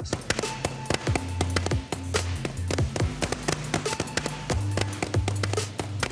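Sheet metal being beaten with a plastic mallet on a sandbag to rough out a shape: rapid repeated blows, several a second. Background music plays under the blows.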